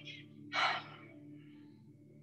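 A person's short, sharp breath about half a second in, over a faint steady hum.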